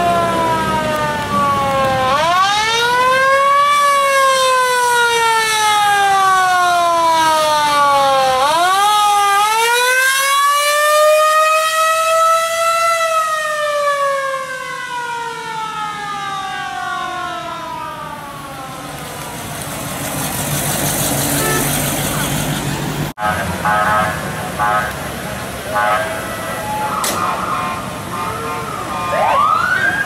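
A siren wailing: twice it climbs quickly in pitch and then slides slowly back down, before dying away about two-thirds of the way through.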